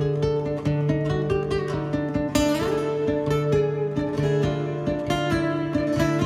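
Acoustic guitars and a smaller plucked string instrument playing an instrumental passage together: picked notes over a held low note, with a quick rising sweep about two and a half seconds in.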